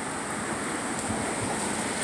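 Strong wind rushing steadily outdoors, with a low flutter on the phone's microphone.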